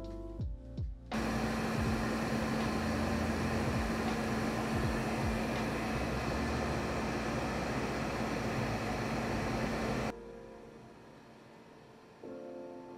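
Steady engine-room machinery noise beside the turning propeller shaft of a steam-turbine ship, an even rushing noise with a steady hum under it. It starts suddenly about a second in and cuts off about ten seconds in, with music before and after.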